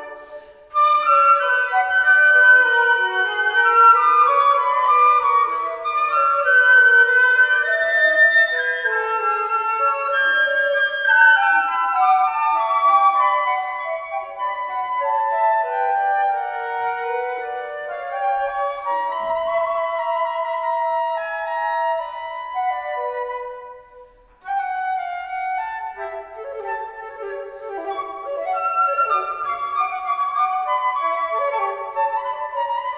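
Two concert flutes playing a duet, their two melodic lines weaving around each other. The playing stops briefly just after the start and again for about a second late on, then carries on.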